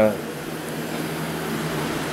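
Propane tank-top radiant heater burning on high: a steady hiss with a faint low hum under it.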